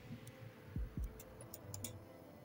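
Computer mouse clicks: two short soft thumps about a second in, then a quick run of several sharp little clicks.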